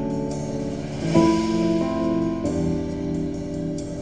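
Instrumental test track playing through a car audio system driven by a Top Palace processor: sustained chords that change about a second in, again near two seconds and just past halfway.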